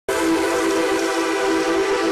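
A single sustained horn-like chord of many tones from the TV show's opening title sting, starting suddenly and held steady.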